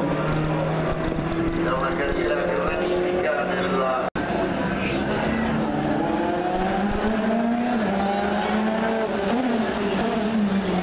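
Rally car engine at high revs on a circuit stage: a steady engine note, then after a sudden break about four seconds in, a car accelerating with its engine pitch climbing and dropping back several times as it shifts up through the gears.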